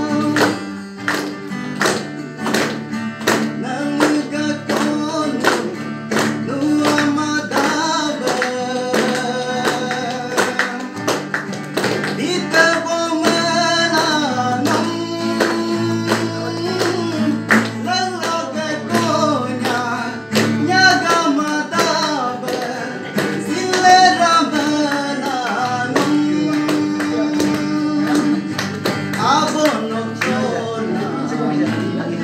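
A man singing to his own acoustic guitar, strummed in a steady rhythm of about two strokes a second.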